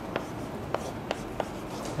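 Chalk writing on a chalkboard: four sharp taps and short strokes of the chalk against the board, spread through the stretch.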